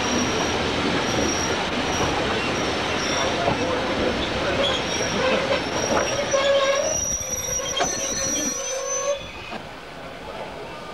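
Railway carriage wheels squealing against the rail on a tight curve, heard from the carriage window over the train's running noise. The squeal comes in short repeated whistles at first, then grows into a strong, held squeal of several pitches in the second half before the sound drops away sharply about nine seconds in.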